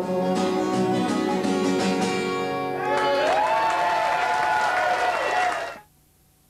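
Acoustic guitar strummed through the closing bars of a live song, then a voice rising into one long held note over the ringing final chord. The sound cuts off suddenly near the end.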